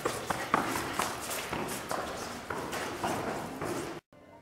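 Quick footsteps climbing a flight of stairs, about three steps a second.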